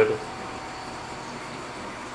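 Steady, even hiss of a running reef aquarium's water circulation and pumps.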